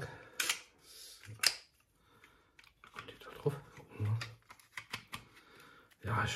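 Clicks and knocks of a stainless-steel meat filling press with plastic end caps being handled and put together, with two sharp clicks in the first second and a half and softer knocks later.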